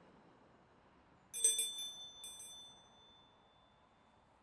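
A small metal bell rung in two short bursts, about a second and a half in and again a moment later, its high ringing fading out within about a second.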